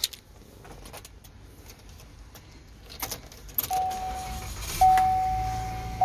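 Key fob and keys handled with small clicks, then the 2017 Buick Regal's 2.0-liter turbo four-cylinder is push-button started: a low rumble builds and the engine catches about five seconds in, settling to idle. A steady high tone sounds alongside from a little before the start.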